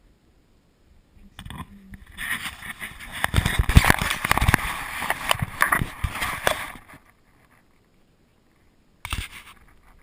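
Handling noise on a chest-mounted action camera: hands and jacket fabric rubbing and knocking against the camera and its harness, loud scraping with many sharp clicks, starting about a second in and stopping about seven seconds in, then again briefly near the end.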